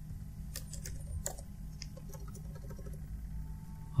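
Faint scattered keystrokes on a computer keyboard, a few separate clicks, over a steady low background hum.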